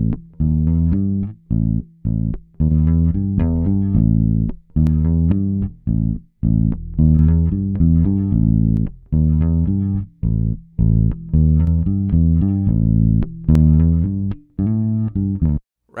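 Direct-recorded electric bass guitar played back solo: a line of plucked notes with short gaps between phrases, while GarageBand's direct box simulator is switched off and on. The difference is very subtle, just rounding out the low end.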